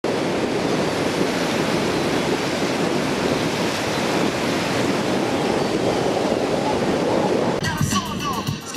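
A steady, even rush of surf-like noise that cuts off suddenly near the end.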